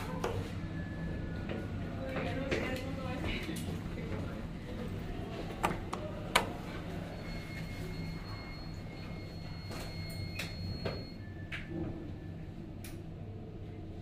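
Hitachi elevator doors sliding shut after the door-close button is pressed, with two sharp clicks about six seconds in, over the car's steady low hum. A thin steady high tone sounds for a few seconds in the second half.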